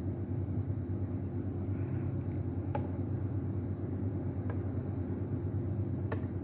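A steady low rumbling hum with a few faint, short clicks, about three seconds in, near the middle and at the end.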